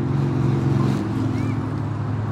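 A motor vehicle's engine running steadily, a low hum whose pitch shifts slightly about a second in.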